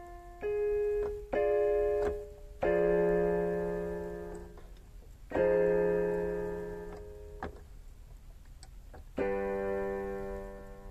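Piano improvisation played as slow, sparse chords: each is struck and left to ring and fade, the fuller ones with a low bass note. A quieter pause of about two seconds comes before a last chord near the end.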